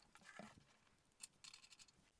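Near silence: room tone with a few faint clicks, about half a second and a little over a second in.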